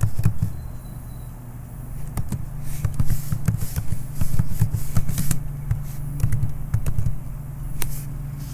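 Computer keyboard being typed on: a run of irregular key clicks, thin for the first couple of seconds and then quick and close together, over a steady low hum.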